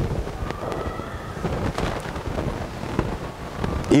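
Low, uneven rumbling noise, like wind buffeting the microphone, with faint thin tones in the background.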